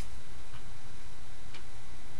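Steady low hum and hiss of room tone, with a faint click about one and a half seconds in.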